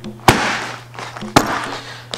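A rear hook kick smacking into a Thai pad about a quarter second in, followed by a second short, sharp smack about a second later.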